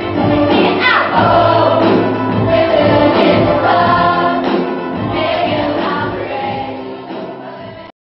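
Youth choir singing together over musical accompaniment, the sound tailing off and then cutting off suddenly just before the end.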